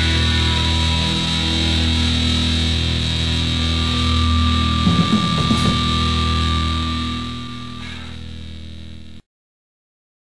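Distorted electric guitar chord held and ringing out at the end of a punk rock song, with a high steady tone joining about four seconds in and a few short hits around five seconds. It fades and then cuts off abruptly about nine seconds in.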